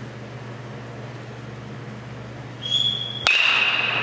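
A metal baseball bat hitting a pitched ball once, a sharp crack about three and a quarter seconds in with a ringing ping that fades away after it. A brief high, steady tone is heard about half a second before the hit.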